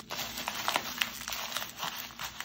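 Plastic bubble wrap crinkling under the hands while a sticker seal on it is picked at: a run of small, irregular crackles and clicks.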